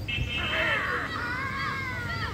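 Children's voices shouting on the field: a drawn-out, rising and falling cry starting about half a second in and lasting over a second, as the fielders react to the delivery.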